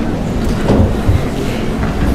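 Steady low rumbling noise with a few dull knocks and thumps, from a desk microphone being bumped and handled as someone settles at the table.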